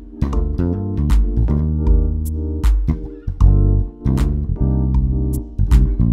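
Electric bass playing an ad-libbed shuffle groove in a swung triplet feel, over a backing track of sustained keyboard chords and sparse kick and snare.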